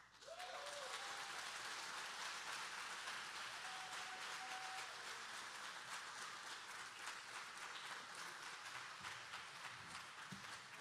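A congregation applauding, breaking out suddenly and carrying on as a dense patter of many hands, easing slightly near the end. A couple of cheers or whoops ring out over it: one just after it starts and another about four seconds in.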